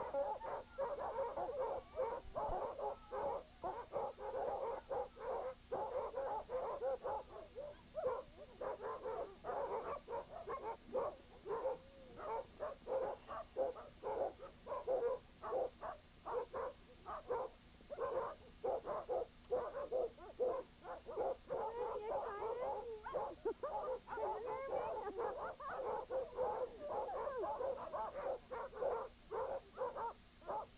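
A yard of sled dogs barking and yelping all at once, a dense, unbroken chorus of many overlapping voices.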